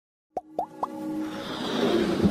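Intro sound effects for an animated logo: three quick pops, each bending upward in pitch and about a quarter second apart, then a swelling rise that builds toward the end.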